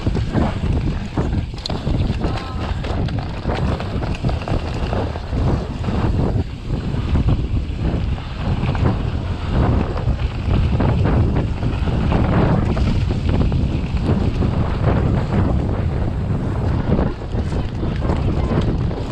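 Wind rushing over the camera microphone as a mountain bike rides a dirt trail at speed, with a constant low rumble from the tyres and frequent knocks and rattles from the bike bouncing over the ground.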